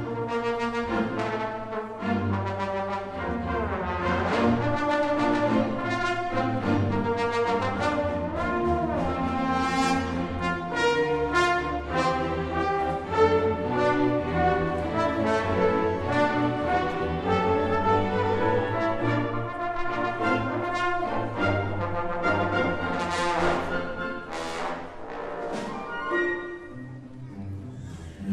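Live symphony orchestra playing a passage that features the trombones, with the brass to the fore and some sliding notes; the music thins and fades near the end.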